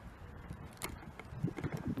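Handling noise from a handheld camera being swung around: a single sharp click a little under a second in, then low rubbing and bumping in the last half second.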